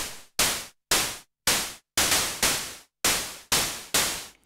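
Korg monologue analogue synthesizer's VCO2 noise oscillator shaped by an attack-decay envelope, played as a series of short hissing hits about two a second, each striking sharply and dying away quickly. It is a raw noise patch that could pass for a snare or a cymbal.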